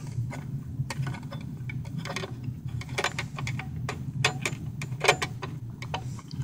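Irregular small clicks and taps of a microscope's lamp housing being handled and closed up by hand after a bulb change, the sharpest click about five seconds in, over a low steady hum.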